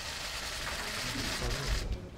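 Rustling and shuffling of people moving off through a lobby, heard as a steady hiss that stops abruptly near the end, with faint voices and a low thump just before it stops.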